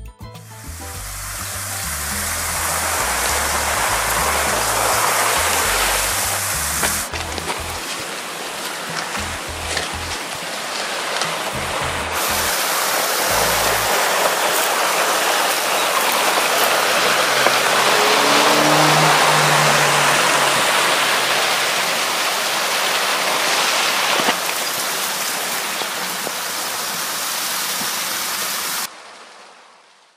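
Steady rush of running water, with background music with a bass line under it for roughly the first half; the water cuts off suddenly near the end.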